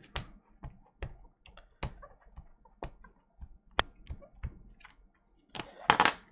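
Clear acrylic stamp blocks and plastic stamp cases being handled: a string of light plastic clicks and taps, with one sharper click a little past halfway and a denser clatter near the end.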